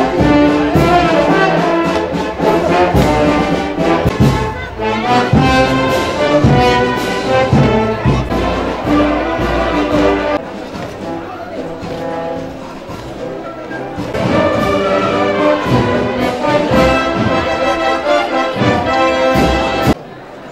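Procession band of brass and drums playing a Holy Week processional march, dropping to a softer passage for a few seconds in the middle before swelling again.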